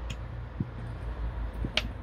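A low, steady hum with a single sharp click near the end and a fainter one at the start.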